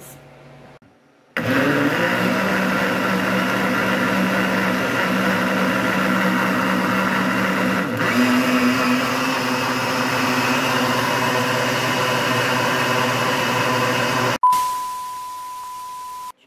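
Countertop blender running steadily for about thirteen seconds, mixing a liquid strawberry mousse mix; its hum steps up slightly in pitch about eight seconds in. Near the end it cuts off into a sudden burst of static with a steady test-tone beep, a TV-glitch editing transition.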